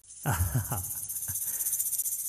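Hand percussion shaker shaken fast and evenly, a steady bright rattle that starts suddenly.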